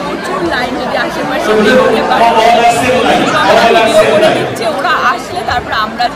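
A woman talking close by over the chatter of many people in a large, echoing hall.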